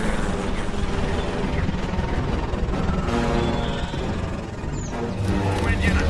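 Dramatic film score playing under a dense battle soundtrack, with a deep rumble swelling in near the end.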